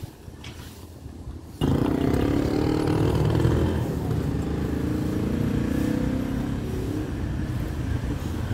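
A motor vehicle engine running close by, suddenly loud about a second and a half in, a low rumble that slowly eases off.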